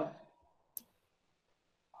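A single short click from a computer mouse button about a second in, against near silence.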